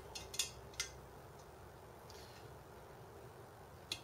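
A few light metallic clicks and taps as hands handle the aluminium extrusion frame, bunched in the first second, with a soft rustle about halfway and one more click near the end.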